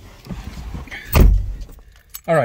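Rustling and movement as someone gets into a car, then a single heavy thud about a second in: the car door shutting.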